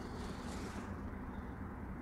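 Quiet room tone: a steady low hum with a faint soft hiss of breath about half a second in.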